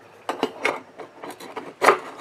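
A stainless steel cup holding an alcohol burner being pushed down into a perforated metal pot stand: metal rubbing and scraping on metal in a few short strokes, with the sharpest clink near the end.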